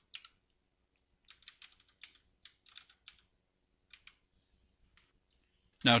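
Quiet keystrokes on a computer keyboard as a short command is typed: about a dozen irregular clicks, a quick run of them about a second in, then a few sparser ones that stop about five seconds in.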